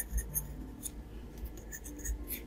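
Graphite pencil sketching on watercolour paper: a series of short scratching strokes as lines are drawn.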